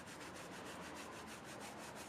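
Soft brush scrubbing leather-cleaning foam into a smooth leather seat: a faint brushing in quick, even back-and-forth strokes.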